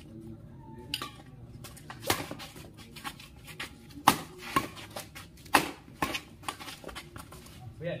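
Badminton rackets hitting a shuttlecock back and forth in a doubles rally: a string of sharp, irregular strikes, the loudest about two, four and five and a half seconds in.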